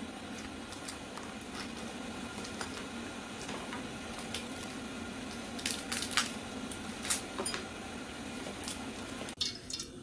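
Dried catfish being broken apart and deboned by hand over a plate: a few sharp cracks and clicks, mostly in the second half, over a steady low hum.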